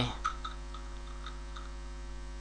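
Steady mains hum from the recording setup, a low electrical buzz with a ladder of higher tones above it, with a few faint keyboard clicks in the first second as code is typed.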